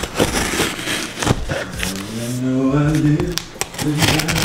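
Utility knife cutting through the packing tape of a cardboard box: a run of short, scratchy strokes in the first half, then a low voice talking over it.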